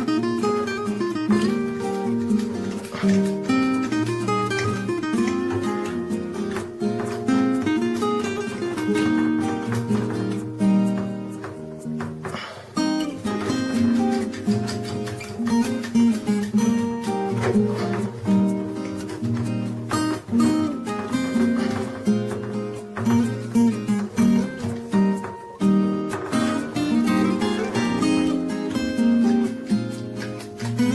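Background music: acoustic guitar, plucked and strummed, playing continuously.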